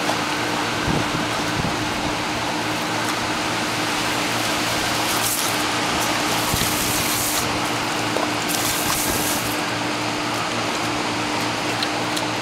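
Garden hose spraying water, a steady hiss that brightens in a few short stretches in the middle. A steady low mechanical hum runs underneath.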